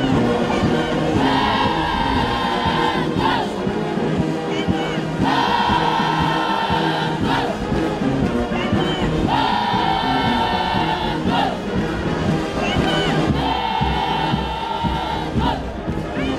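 Group of voices singing with musical accompaniment: a repeated phrase whose long steady note comes back about every four seconds, four times, each ending in a short slide in pitch.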